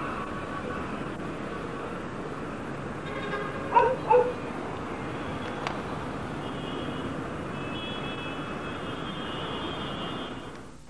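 Steady city traffic noise, with a dog barking twice about four seconds in. It is heard through the mono sound track of a VHS tape recorded at LP speed.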